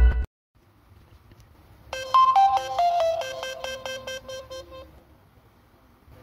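Itel A14 smartphone's power-on startup jingle: a run of short electronic chime notes stepping down in pitch for about three seconds, fading out. The tail of loud intro music cuts off at the very start.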